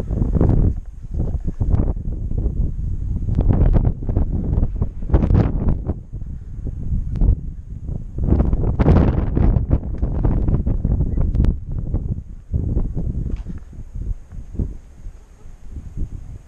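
Wind buffeting the microphone in irregular, loud gusts: a low rumbling noise that swells and drops every second or so.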